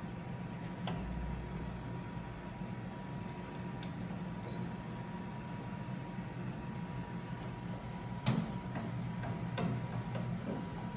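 A few light clicks and knocks from hands handling wiring and metal parts inside a commercial pizza oven's side compartment, over a steady low hum. The loudest knock comes near the end.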